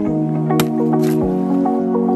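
Background music: held chords that change about once a second, with a few soft percussive hits.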